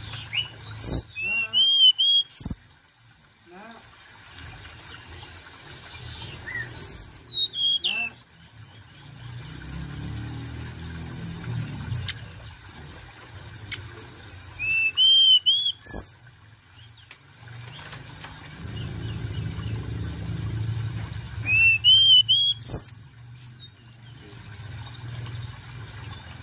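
A caged hill blue flycatcher (tledekan gunung) singing in four short bursts of clear, high whistles and chirps, about every seven seconds, over a low background rumble.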